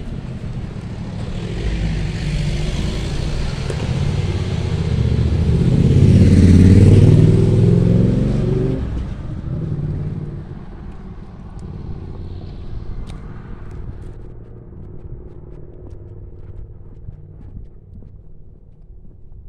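A motorcycle approaching along the road and passing close by. Its engine grows louder to a peak about seven seconds in, then fades away.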